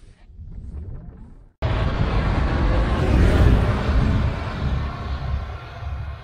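Loud rushing noise of the electric BRO all-terrain vehicle driving across deep snow, heard from outside, with no engine note. It starts abruptly about one and a half seconds in, after a quiet stretch, and is loudest around the middle.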